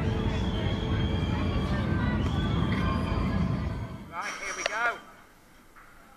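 Steel inverted roller coaster train running on its track: a heavy rumble with a steady high whine that stops about four seconds in. A brief wavering high-pitched cry follows just before the end.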